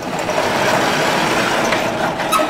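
A vertical sliding chalkboard panel being pushed up along its track, a steady rolling rumble lasting about two seconds.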